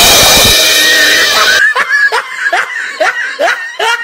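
A comedy drum sting's cymbal crash rings loudly for about a second and a half after the punchline, then gives way to laughter in short 'ha' bursts, about three a second, each falling in pitch.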